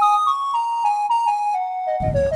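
Background music: a flute melody of short notes stepping up and down.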